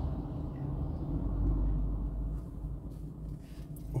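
Low, steady rumble of street traffic heard from inside a car.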